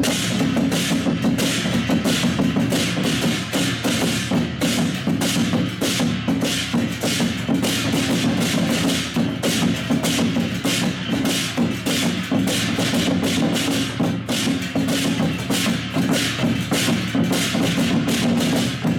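Taiwanese jiaoqiangu (sedan-chair drum) ensemble playing: drums beaten in a fast, unbroken rhythm with hand cymbals clashing over them.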